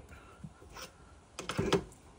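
Lathe tailstock quill being wound back until its end presses against the tool's Morse taper and knocks it loose: a few faint ticks, then a short cluster of metallic clicks and knocks about a second and a half in as the taper pops free.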